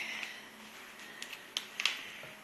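Paper handling: a large paper mailing envelope being worked open by hand, with faint rustling and a few sharp crackles of the flap, mostly in the second half.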